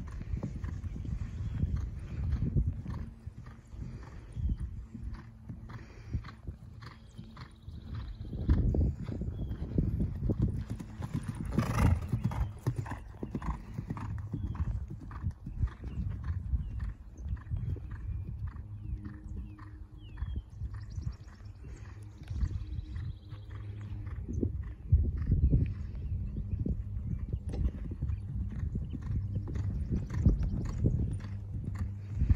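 Hoofbeats of a ridden horse cantering and jumping on grass, coming in a quick, uneven rhythm that swells and fades as it passes.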